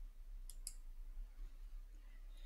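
A pause in speech: faint room tone with a low steady hum, and two small, quick clicks about half a second in.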